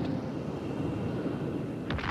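A deep, steady rumble, then a sudden crackling burst of blast noise just before the end as the sound of an atomic bomb test explosion begins.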